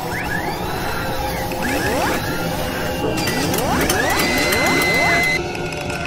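Animated logo sting: repeated rising whooshing sweeps over mechanical clicking and whirring, with a steady high tone held from about four seconds in until it cuts off shortly after five.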